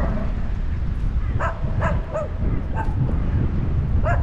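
A flock of crows calling as they fly overhead: several short, harsh calls in a loose series, over a steady low wind rumble on the microphone.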